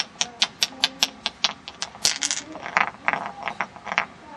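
A rapid, even series of sharp taps or clicks, about five a second, breaking into a quicker flurry about two seconds in, then more irregular taps.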